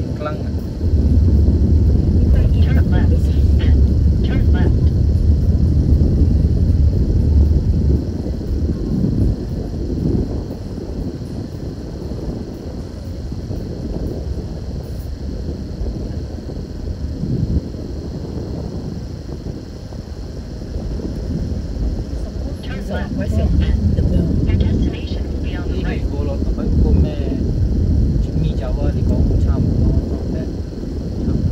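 Car cabin noise while driving slowly: a low rumble of engine and tyres heard from inside the car. It is heavier for the first several seconds and again in the last several, quieter in between.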